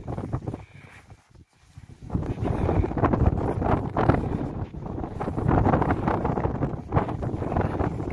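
Wind buffeting a phone's microphone outdoors in falling snow. It eases to a brief lull about a second in, then gusts steadily again.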